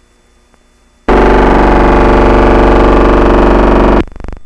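Faint hum and hiss of an old film soundtrack, then about a second in a sudden, extremely loud, distorted buzzing blare with a wavering pitch. It cuts off abruptly at the end.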